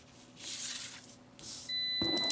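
Card stock rustling as it is moved against the flat panel, then a steady high electronic beep starts near the end.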